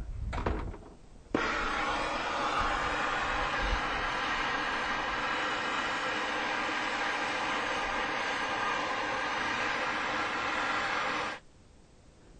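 MAPP gas blowtorch flame burning with a steady hiss, starting abruptly about a second in and cut off abruptly shortly before the end.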